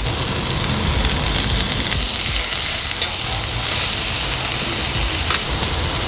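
Cabbage and other vegetables sizzling steadily in an oiled frying pan, with a couple of light clicks partway through.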